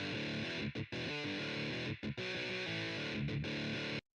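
Distorted electric guitar riff played back by Guitar Pro notation software at a moderate tempo, with palm-muted chugs and a few short breaks between phrases. It stops abruptly at the end as playback is halted.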